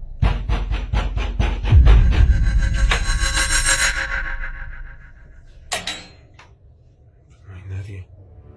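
Rapid, loud banging on a door, about five blows a second for roughly three seconds. A sustained ringing noise follows, then one more sharp knock a little before six seconds.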